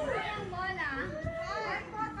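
Volleyball players' high-pitched voices calling and shouting to one another, with no clear words.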